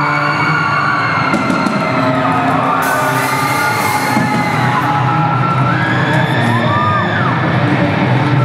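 Live rock band with electric guitars playing loudly, while the audience cheers, whoops and yells over it.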